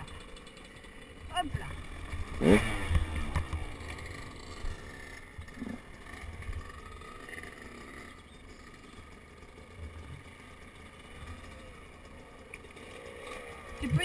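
Two-stroke 125 cc dirt bike engines running at low revs, with one brief rev about two and a half seconds in.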